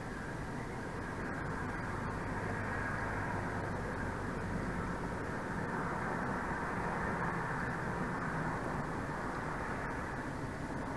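Steady low rumble and rushing of a distant engine, swelling slightly through the middle and easing again near the end.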